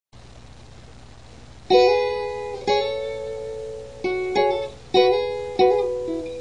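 Acoustic guitar chords strummed as a song intro: after a low hum for the first second and a half, six separate strums, each left to ring and fade.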